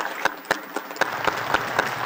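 Delegates applauding after a speech: a few separate claps at first, filling out into denser, steady applause about a second in.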